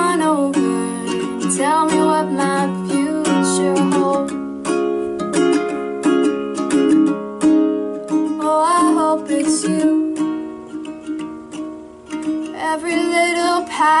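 Ukulele strummed in a steady rhythm, with a woman singing short phrases over it: one at the start, one around the middle and one near the end.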